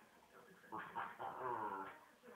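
A small dog whining, one drawn-out whine lasting about a second in the second half.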